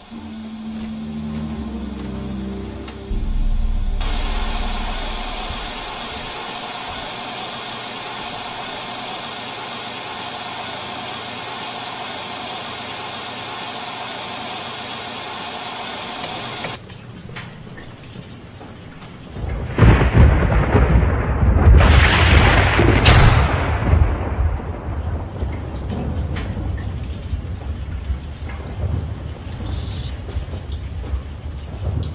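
Thunderstorm: a steady hiss of rain, then thunder rolls in about two-thirds of the way through. A sharp crack comes at its peak and the rumble carries on afterwards.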